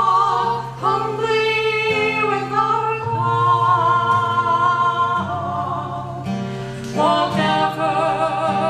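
Women singing a slow song together with long held notes, accompanied by a strummed acoustic guitar.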